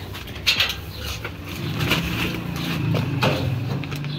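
A few sharp metal clicks and rattles as the handle and latch of a locked metal louvered door are tried, with a low steady drone in the second half.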